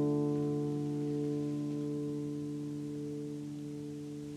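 Acoustic guitar's final chord ringing out and slowly fading away, with no new strums.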